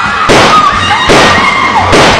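Two gunshot bangs, the first about a third of a second in and the second about a second in, each trailing off briefly.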